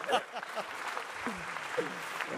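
Studio audience applauding, with brief fragments of voices over the clapping.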